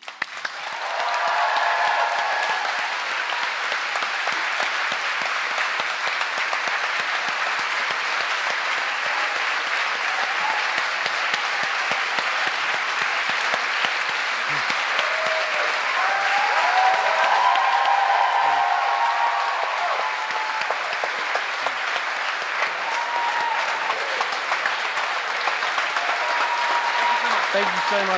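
An audience applauding, starting abruptly as the song ends and carrying on steadily. A few voices call out over the clapping, about a second in and again past the middle.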